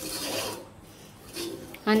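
A spoon scraping and stirring a dry, grainy mix of roasted semolina, sugar and coconut against the sides of an aluminium pressure cooker pan. A rasping scrape in the first half second is followed by a quieter stretch and one more short scrape near the end.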